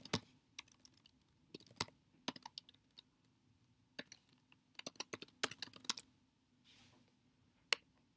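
Computer keyboard typing in short, irregular runs of keystrokes, with a quick flurry about five seconds in and two single clicks near the end, over a faint steady hum.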